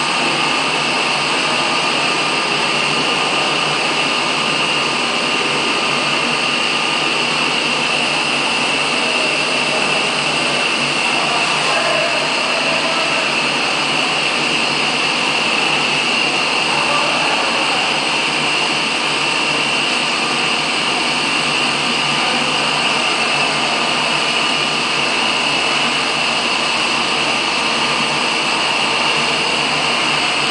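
Aquarium aeration running: a loud, steady hiss with no breaks, strongest in a high band, from the air supply bubbling through the live-fish tanks.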